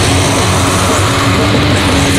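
Black metal: heavily distorted guitars and bass playing a riff over drums, a dense and steady wall of sound heavy in the low end.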